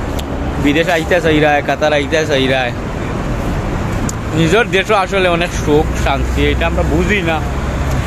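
A man speaking, with street traffic noise underneath; a low vehicle rumble grows stronger in the last two seconds or so.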